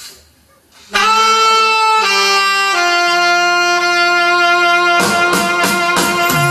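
A live band's horn section, led by saxophone, starts about a second in, holding a few long notes that step down in pitch. Drums and the full band come in about five seconds in.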